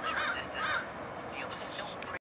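Birds giving a rapid run of harsh, cawing calls, loudest in the first second and fainter after.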